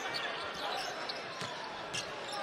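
A basketball being dribbled on a hardwood court, with a couple of distinct bounces late on, over the steady noise of an arena crowd.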